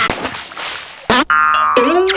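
Edited cartoon sound effects over background music: a loud noisy rush that fades over the first second, then a springy boing whose pitch bends near the end.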